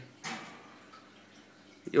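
Faint, steady trickle of aquarium water running under a short pause in a man's talk.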